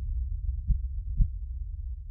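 Low, dark rumbling drone from a horror video's sound design, with a heartbeat-like double thump about a second in.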